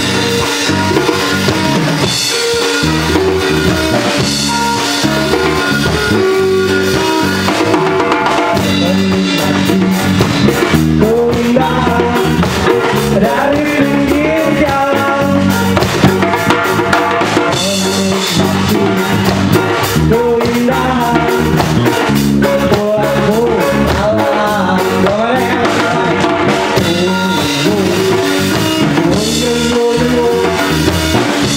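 Live rock band playing with drum kit, bass guitar, electric guitars and a hand drum. A singer comes in about ten seconds in.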